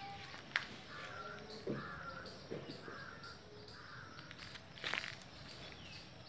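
A bird calling in a short, even series of about five calls, roughly one and a half a second, with a couple of sharp knocks near the start and about five seconds in.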